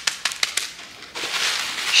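Plastic sticker packaging crinkling as it is handled: a few sharp crackles, then a longer rustle from about a second in.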